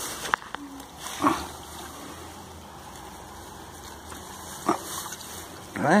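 A dog barking a few short times, the loudest about a second in and another near the end, over a steady low outdoor background.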